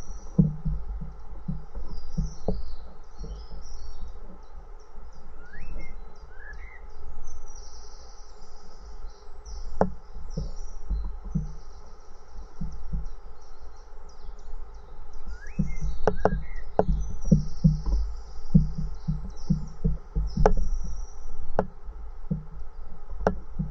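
Small birds chirping fast and high-pitched throughout, with a short rising call twice. Under them, irregular low knocks and thumps come from close by, over a steady low rumble.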